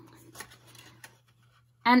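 Faint rustling and a few soft ticks of cardstock and cardboard being handled, as a black cardstock strip is pressed into place inside a kraft cardboard box. A faint low hum runs underneath.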